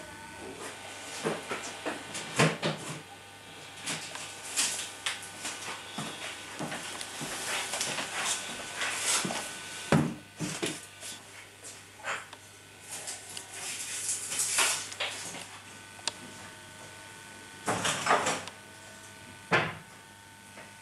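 Irregular knocks, bumps and rustling of things being handled and moved among packing boxes, sharpest about two and a half seconds in, halfway through and near the end, over a faint steady hum.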